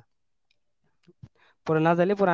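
A pause in a man's talking, broken by a few short faint clicks, then he starts speaking again in Bengali near the end.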